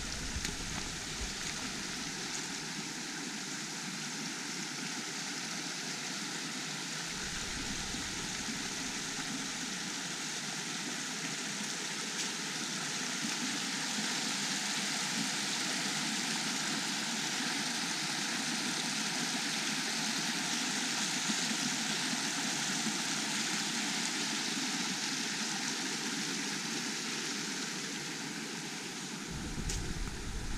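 Small forest stream rushing over rocks and little cascades: a steady rush of water, somewhat louder in the middle. Near the end a low rumble of wind on the microphone comes in.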